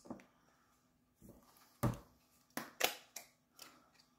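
Plastic clamshell wax-melt packs being handled and opened: a series of sharp plastic clicks and crackles, the loudest about two seconds in.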